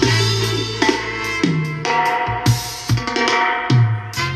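Music with drums and a heavy bass line playing through a GMC 897W 10-inch portable Bluetooth speaker, with sharp drum hits over held low bass notes.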